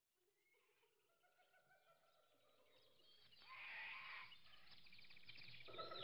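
Near silence, then about halfway through faint animal calls come in as background zoo ambience and carry on quietly.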